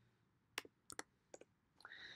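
A handful of faint key clicks on a computer keyboard over about a second: typing a short command and pressing Enter.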